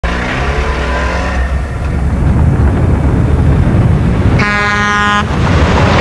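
Heavy, low road-traffic rumble of a car, then a car horn sounds once, steady, for about a second, a little past four seconds in.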